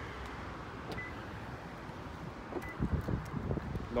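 Wind rumbling on a phone's microphone outdoors, stronger in the second half, with a few faint footstep-like clicks and two faint, short high beeps about one second and nearly three seconds in.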